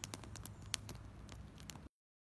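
Small wood fire faintly crackling, with irregular sharp pops, over a low outdoor background. It stops abruptly near the end.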